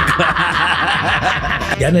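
A man laughing, breathy and unbroken, into a close microphone.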